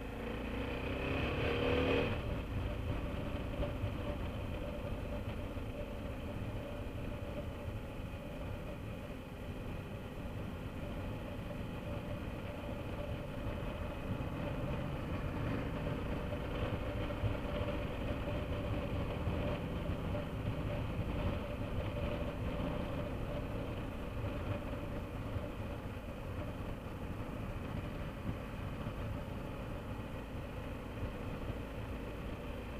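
BMW F650GS Dakar's single-cylinder engine accelerating, its pitch rising for about the first two seconds, then running steadily at a constant road speed with road noise.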